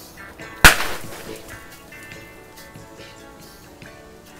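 A sharp bang about two-thirds of a second in, with a short decaying tail, as the extended water hose feeding the brew kettle comes apart under too much water pressure. Quiet background music with held tones plays underneath.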